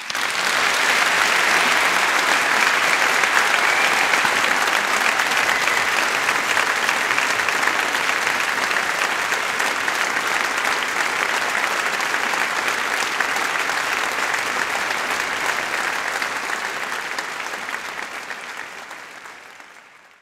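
A large audience applauding, starting abruptly and holding steady, then fading out over the last few seconds.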